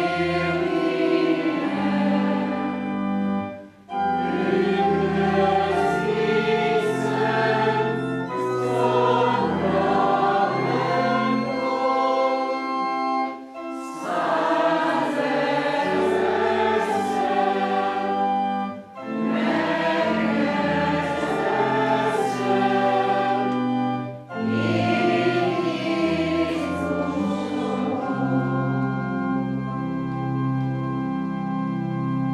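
Congregation singing a hymn with pipe-organ accompaniment, in phrases broken by short pauses. Near the end the voices stop and the organ plays on alone.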